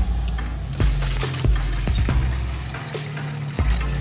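Water running from a garden hose into a plastic basin, filling it, under background music with a steady beat.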